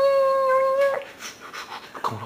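A long howl held at one steady pitch, stopping abruptly about a second in, followed by fainter scattered sounds.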